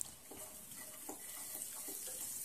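Chopped garlic frying faintly in butter that is not yet fully melted in a non-stick pan, with a spatula stirring and scraping across the pan; a light tap at the very start.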